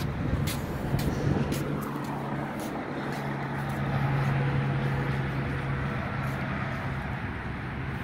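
A motor vehicle's engine idling: a steady low hum that grows stronger about a second in, with a few faint clicks over it.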